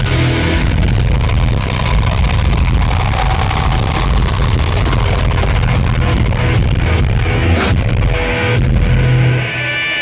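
Live rock band playing loud: distorted electric guitar, bass guitar and drum kit, heard from the crowd. Shortly before the end the level drops a little and a held chord rings on.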